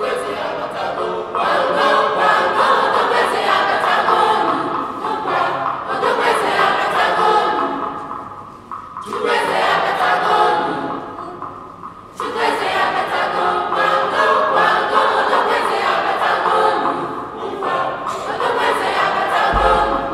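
A school choir sings an Igbo song together, in long phrases broken by a few short pauses.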